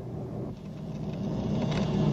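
Boat engine running at low trolling speed, a steady low hum that grows gradually louder.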